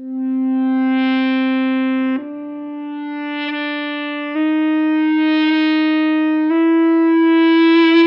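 An EBow driving an electric guitar string in standard mode with the tone rolled back, giving a sustained violin-like tone through the amp. The first note swells in over about a second as the EBow moves toward the pickup, then three more sustained notes follow, each a little higher, about every two seconds.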